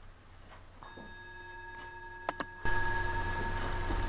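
A metal bell struck once about a second in, ringing on with a steady, slowly fading tone. Two light clicks follow, and then the background hum and hiss suddenly grow louder.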